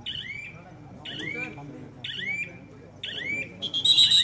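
A short, high chirp repeating about once a second, steady in rhythm, with a brief steady high tone near the end.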